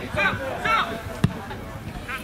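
Players calling out on the pitch, and a little over a second in a single sharp thud of a football being kicked.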